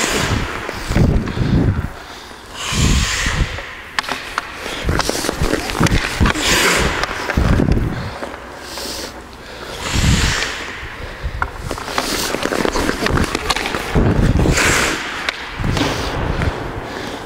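Hockey skates carving and scraping on rink ice in a series of loud swishes about every three to four seconds, with a few sharp clacks of the stick hitting the puck as shots are taken.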